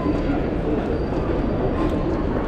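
Busy railway station concourse ambience: a steady hubbub of many people walking and talking, over a constant low rumble.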